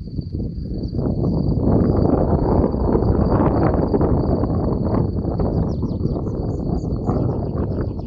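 Wind buffeting the microphone with a loud, uneven rumble, under a thin steady high-pitched tone. In the second half, short falling bird chirps come in repeatedly.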